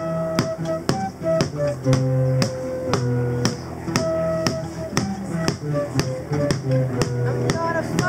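An acoustic folk band of three nylon-string classical guitars strumming chords under a flute melody of held notes. A steady beat is tapped with sticks on a plastic storage tub, about two taps a second.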